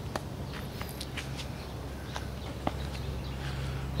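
A few light footsteps and scattered clicks over a low steady hum.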